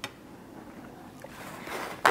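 A light click at the start, then a paper towel being pulled off its roll, a soft rustle that grows louder near the end.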